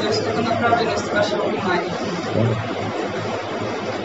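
Indistinct speech and chatter from people in a room over a steady low hum.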